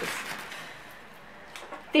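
Soft rustling of a paper wrapper being opened to free a wooden pencil, with a few light crinkles near the end.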